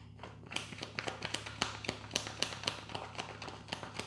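Tarot cards being shuffled by hand: a quick, uneven run of soft slaps and clicks, several a second, starting about half a second in.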